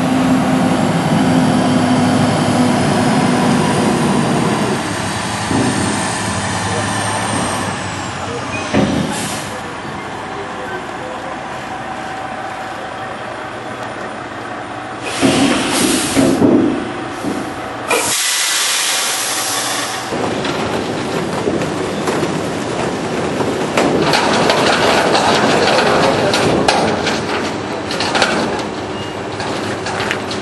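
Heavy truck-and-trailer machinery running. A high whine falls in pitch over the first eight seconds, there are loud bursts around fifteen seconds in, and a two-second hiss of air comes about eighteen seconds in, followed by steady rattling.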